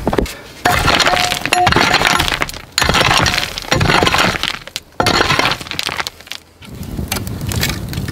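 Metal-headed digging tool chopping into stony ground, striking and scraping rocks while loose rubble clinks and clatters in repeated bouts. About a second in there is a brief metallic ring.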